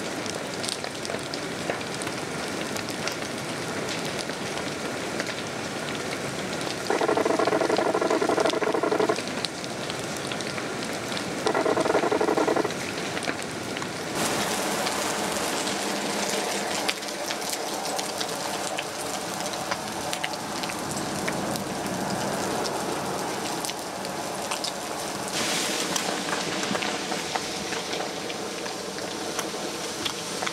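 Wildfire burning through forest brush and timber: a steady crackle and hiss of burning wood. Twice, about seven and about eleven seconds in, a loud steady tone cuts in for a second or two.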